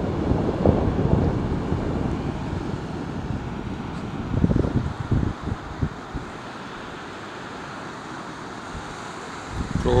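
Wind buffeting the microphone over the steady wash of breaking sea surf, with the buffeting easing after about six seconds and leaving the surf hiss.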